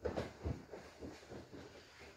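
Two grapplers' gis rustling and their bodies scuffing and bumping on a vinyl-covered grappling mat as they change position, with a few soft knocks in the first half second.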